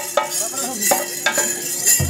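Chenda drumming for a Theyyam dance: a rapid, rattling stick roll with sharp strikes about every half second, the deep bass drumbeats absent until they return at the end.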